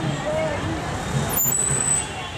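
Street noise: road traffic running steadily with voices of a crowd nearby, and a short sharp click about one and a half seconds in.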